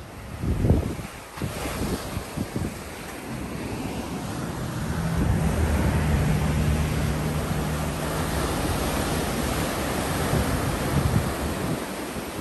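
Ocean surf washing in over rocks, with wind buffeting the microphone in gusts near the start; the surf grows louder a few seconds in.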